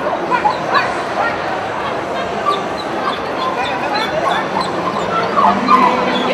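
A dog barking and yipping in short high calls, over crowd chatter.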